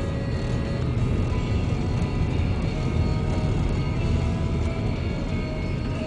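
Steady road and engine noise inside a moving car, with music playing faintly underneath.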